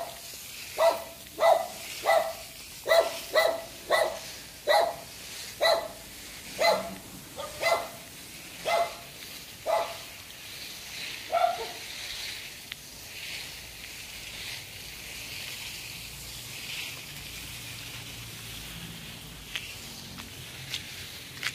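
A dog barking in a series of single barks, about fourteen over roughly eleven seconds, then falling silent.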